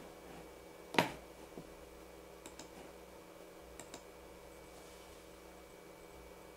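A few sparse clicks from handling things on a desk, with one sharp knock about a second in that is the loudest sound, over a faint steady room hum.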